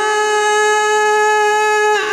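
A man's voice in melodic Arabic Quran recitation, holding one long steady note after a run of ornamented, wavering pitch.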